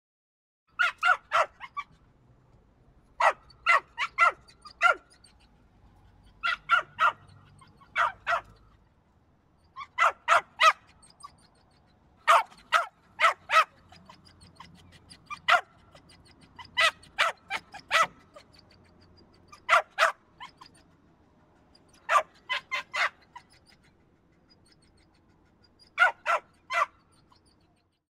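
Small dog barking: short, sharp barks in quick runs of two to four, a new run every two or three seconds, starting just under a second in.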